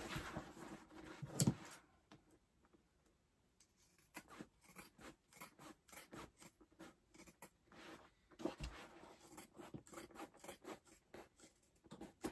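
Fabric scissors trimming a stitched seam allowance on a canvas bag: a quick rustle of the bag being handled, then from about four seconds in a long run of short, irregular snips as the straight blades cut along the edge.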